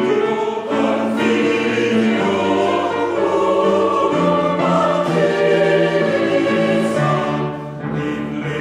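Mixed choir singing loudly in full chorus, accompanied by piano and harmonium, with a brief drop in level near the end.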